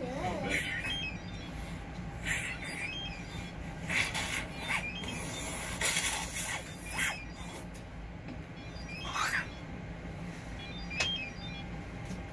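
Short, irregular bursts of breath rushing through a tracheostomy while the trach tube is being changed, about eight in twelve seconds, over a steady low hum.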